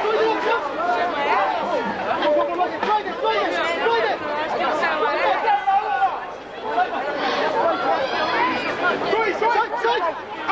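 Several spectators talking at once close to the microphone: a steady babble of overlapping voices with no clear words.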